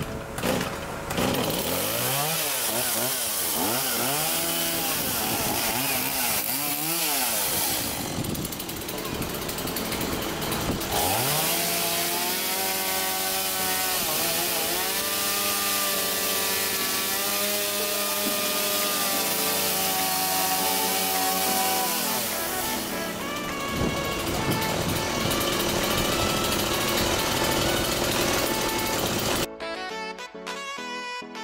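Stihl MS180 two-stroke chainsaw pull-started, then revved up and down several times. It is held at high revs for about ten seconds in the middle, then drops back to a lower steady run before cutting off near the end.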